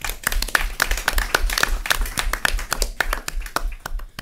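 Audience applauding: a dense run of hand claps that stops about four seconds in.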